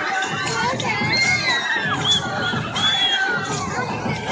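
A group of children shouting and cheering together, many high voices overlapping, with shrill squeals among them.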